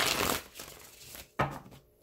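Tarot cards being shuffled by hand: a brief rush of cards sliding at the start that fades off, then a single sharp tap of the cards about one and a half seconds in.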